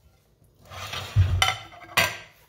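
A dinner plate set down on a stone countertop: handling and scraping, a soft thump a little after a second in, then a sharp clink near the end.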